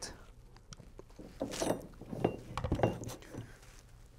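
Faint, scattered clicks and knocks of hand work on a plastic kayak deck: a cordless drill being lifted out of a plastic mounting base and set down, and the base being shifted into line. The drill motor is not running.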